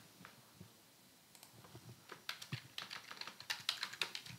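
Computer keyboard typing: faint, quick keystrokes that begin about a second in and come thicker toward the end, as a username is keyed in.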